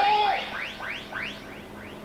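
A rapid run of short rising electronic chirps, several a second, fading away over about two seconds. A brief voice sounds at the very start.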